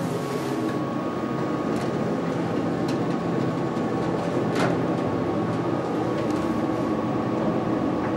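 Otis hydraulic elevator cab with its doors closing: a steady machine hum with a thin, constant high whine, and two faint knocks about three and four and a half seconds in.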